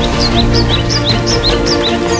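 Background music with a bird chirping over it: a quick run of about ten short falling chirps, alternating between a higher and a lower pitch at about five a second, stopping near the end.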